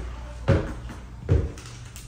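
Footsteps climbing hard stair treads: two dull thuds a little under a second apart.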